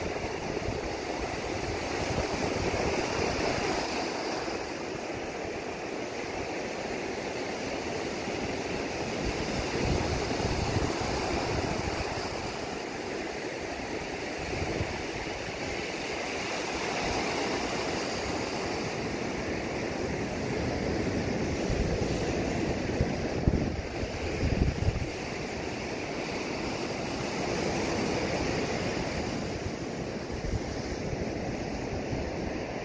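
Ocean surf breaking on the beach at night: a steady rush that swells and eases every several seconds. Wind buffets the microphone briefly a little past the middle.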